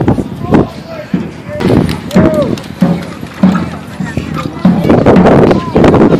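A rope-tensioned marching drum beating in a parade, its strokes coming about twice a second, over people talking nearby.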